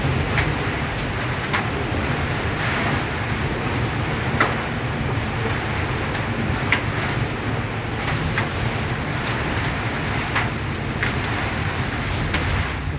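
Heavy rain pouring down in a strong wind: a steady rushing noise with a low rumble of wind on the microphone and scattered sharp taps of drops.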